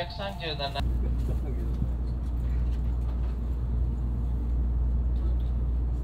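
Steady low rumble of a Shinkansen bullet train running, heard inside the passenger car. The tail of a Japanese on-board announcement ends in the first second.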